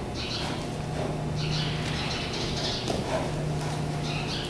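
Small birds chirping in short bursts, a few times, over a steady low hum.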